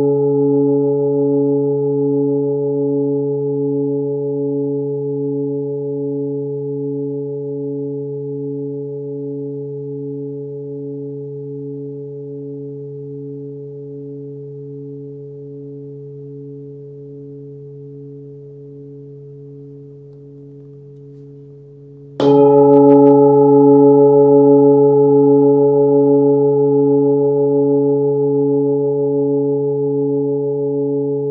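Hand-forged 26.7 cm singing bowl with a 137 Hz (C#) fundamental, ringing with several overtones and a slow wavering beat as it slowly dies away. About 22 seconds in it is struck again, and it rings out loud and full before beginning to fade.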